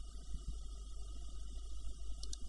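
Quiet room tone: a steady low hum with a faint hiss.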